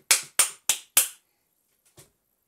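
Four sharp hand claps about a third of a second apart, stopping a little over a second in.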